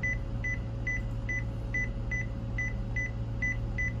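Konica Minolta bizhub copier touch panel beeping once for each key pressed as a password is typed: about ten short, high beeps, two or three a second at uneven spacing, over a steady low hum.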